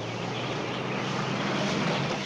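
A canvas-topped jeep's engine running as it drives past on a dirt road, growing louder to its closest point near the end.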